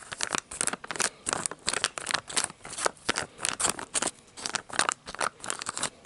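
Plastic food wrapper crinkled and squeezed in the hands close to the microphone: a rapid, irregular run of crackles.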